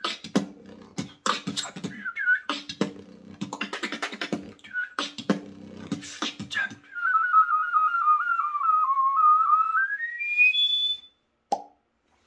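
Mouth beatboxing: a fast beat of kick and snare sounds with short whistled chirps mixed in. This is followed by a long, fluttering recorder-style beatbox whistle lasting about three seconds that dips slightly, then glides sharply up in pitch and cuts off, with silence near the end.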